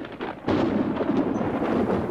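A thunder sound effect: a sudden clap about half a second in that rumbles on steadily.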